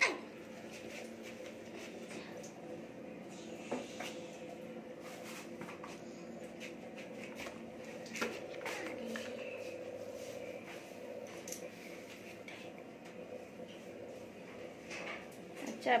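A few sharp clinks and knocks of steel pots and utensils on a gas stove, over a steady low hum.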